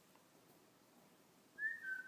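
Near silence, then about one and a half seconds in a single short whistle-like tone that dips slightly in pitch and then holds steady: a sound effect for a logo reveal in an animated intro.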